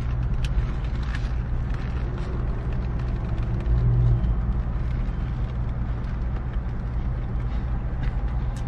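Steady low hum of a car heard from inside the cabin, its engine and climate fan running while parked. About halfway through comes a short, low hummed sound, and there are a few faint clicks early on.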